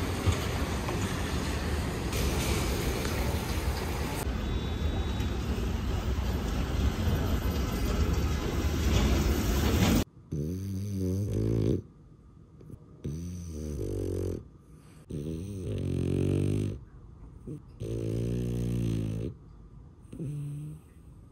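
Steady noise of a wet city street, then, after a cut about halfway, a sleeping French bulldog snoring: four long snores about two seconds apart.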